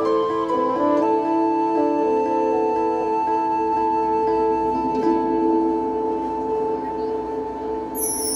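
Music: long held chords that thin out toward the end, the closing bars of a children's chorus song with accompaniment.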